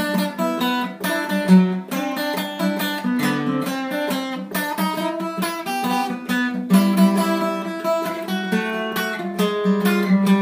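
Acoustic guitar played solo, a brisk run of picked and strummed notes with no singing.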